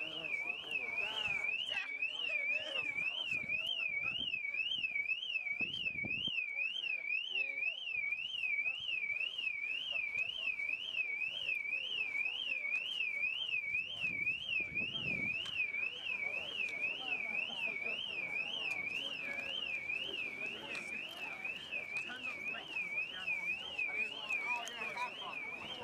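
An electronic alarm siren warbling steadily up and down in pitch, about twice a second, typical of a car alarm going off. Faint voices underneath.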